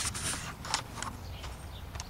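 Camera handling noise: a few light knocks and rubs on the microphone as the handheld camera is moved, over a low steady background rumble.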